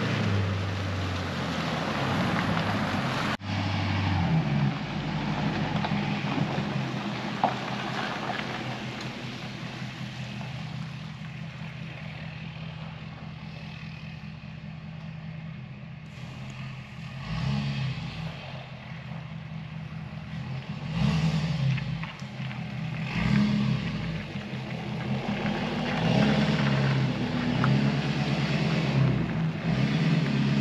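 Pickup truck towing an enclosed trailer, its engine running steadily with tyre noise on wet pavement; the sound grows louder and more uneven in the second half as it pulls in.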